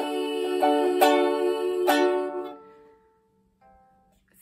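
Ukulele strummed, its last chords ringing and dying away about two and a half seconds in, leaving near silence with one faint short note near the end.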